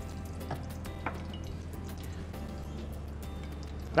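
Soft background music with steady sustained low notes, the bass shifting about halfway through. A few faint clicks sound over it.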